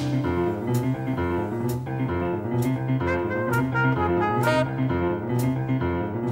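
Live band playing a jazzy instrumental, a brass and saxophone melody over bass and drums, with a sharp drum-kit accent roughly once a second.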